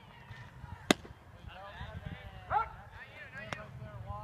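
A pitched baseball smacking into the catcher's mitt: one sharp pop about a second in, the loudest sound. Players call out after it, with one loud rising shout, and a lighter click comes near the end.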